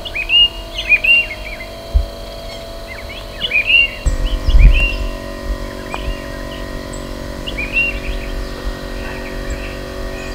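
Songbirds chirping in short, repeated rising-and-falling calls, over soft background music with sustained chords and a few low thumps.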